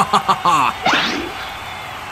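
A cartoon character laughing in short, quick bursts, then a quick rising swoosh sound effect about a second in.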